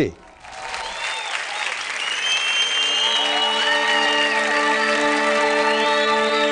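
Studio audience applauding and cheering after the band is announced. About halfway through, a held chord from the band comes in under the applause as their song begins.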